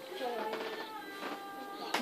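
A young child's soft vocalizing, with a voice that glides up and down in pitch and no clear words.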